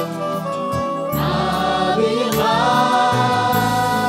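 Church choir singing a worship song together through microphones, over band accompaniment with drum hits. About halfway through, the voices settle into one long held chord.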